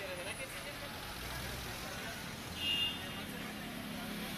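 Street traffic noise, a steady mix of passing vehicles, with a brief high-pitched sound a little over halfway through.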